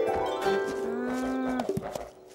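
A cartoon llama's call: one long call lasting about a second, with light music under it.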